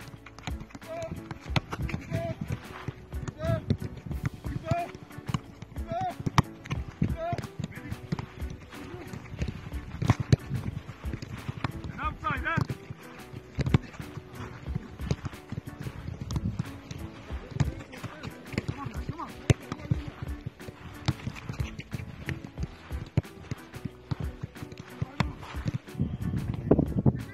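Football training on a grass pitch: repeated dull thuds of footballs being kicked and passed, with players' voices calling in the background. A short chirp repeats about once a second for the first several seconds.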